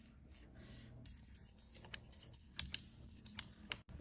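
Faint handling sounds of plastic car parts, the fuel-filler housing and its emergency release cable being worked into place: light scratching, then a few short sharp clicks in the second half.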